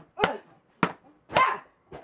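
A claw hammer striking the aluminium body of a MacBook Pro laptop: a run of sharp blows about every half second, some with short shouts or yelps over them.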